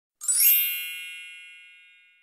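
A bright chime sound effect: a single ding struck just after the start, with many high ringing overtones that fade away slowly over about two seconds.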